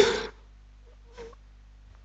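A pause in a man's speech: his last word dies away in a short echo, then near silence with one faint, brief sound just after a second in.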